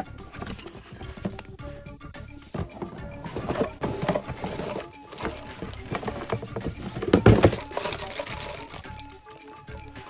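Background music with held notes, over the rustling and crinkling of a cardboard box and a plastic bag as a boxed soft-vinyl model kit is tipped out and its bagged parts handled; the loudest crinkle comes about seven seconds in.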